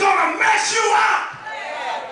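A preacher shouting into a microphone, loud and drawn out, with congregation voices calling back; it falls away after about a second and a half.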